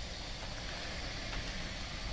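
Quiet, steady background rumble with no distinct events.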